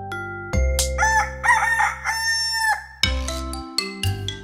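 A rooster crowing cock-a-doodle-doo: one crow of under two seconds, starting about a second in and ending on a long held note. It sounds over soft mallet-percussion music with sustained notes and a low bass.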